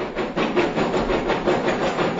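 Many small balls rattling and clattering quickly against each other and against a container that is being shaken.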